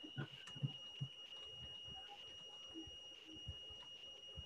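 Faint room tone on a video call's audio, with a thin, steady high-pitched tone running throughout and a few faint brief low sounds in the first second.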